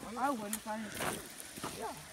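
Quieter, indistinct speech, with a couple of light clicks.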